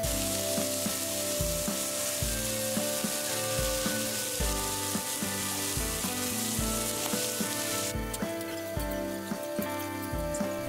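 Beef smash-burger patties topped with melting cheese sizzling steadily on a hot cast iron griddle, the sizzle easing about eight seconds in. Background music with a steady beat plays underneath.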